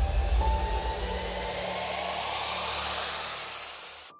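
Tail of the outro music: the bass and a held tone die away in the first second and a half. A swell of hissing noise rises in pitch, then fades out near the end.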